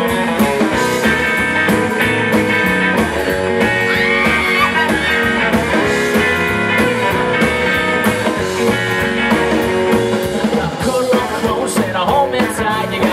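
Live band playing an instrumental passage: two electric guitars over a drum kit, with a guitar bending a note about four seconds in.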